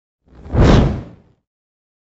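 A single whoosh sound effect for the logo animation, swelling and fading within about a second.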